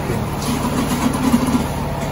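A motor running steadily with a low, even hum.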